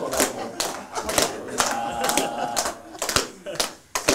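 A group clapping in time, about two claps a second, over several people's voices calling and chattering; the clapping and voices drop briefly just before the end, then resume.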